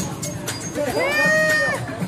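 A person's long, high-pitched vocal call that rises and then falls, about a second in, over background music with a steady beat.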